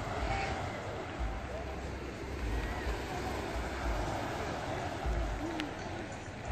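Wind gusting on the microphone in repeated low rumbles over a steady hiss of surf on the shore, with faint voices in the background.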